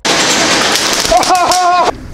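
A logo sound effect: a loud burst of crackling, hiss-like noise that starts abruptly, with a short voice-like call over it in the second half.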